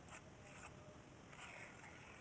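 Hand trowel scraping and smoothing wet cement in a few short, faint strokes.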